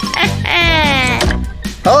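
A person's long cry, falling in pitch, over background music.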